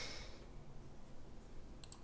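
Faint computer mouse clicks, a couple of quick ones near the end, with a soft hiss in the first half second.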